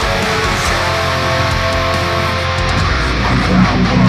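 Heavily distorted left-handed Schecter electric guitar playing a metalcore arrangement, sustained ringing notes giving way to low rhythmic chugged chords about three seconds in.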